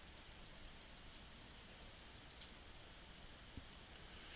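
Near silence: room tone with a run of faint, rapid clicking at a computer through the first two and a half seconds.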